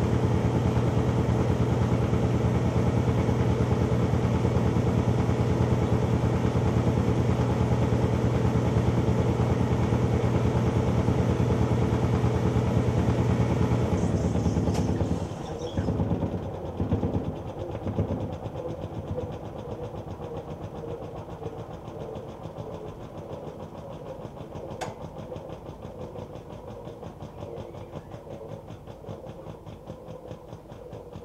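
Montgomery Ward Signature 2000 top-load washer in a spin with a load of shirts: the motor runs with a steady hum, then shuts off about halfway through with a few clunks. The basket then coasts down more quietly, with a single click near the end.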